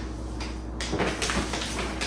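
Wrapped gift box being handled and set down on a kitchen counter: a run of light rustles and soft knocks starting about a second in.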